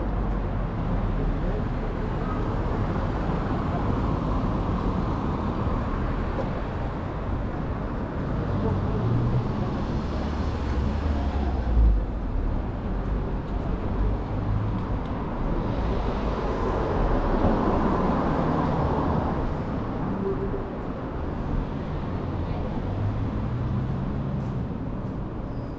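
Town-centre street ambience: a steady wash of road traffic, with vehicles passing twice, building and fading, and a short low thump about halfway through.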